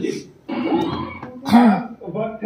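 A person clearing their throat with a single loud cough about one and a half seconds in, after a short stretch of low murmured voice.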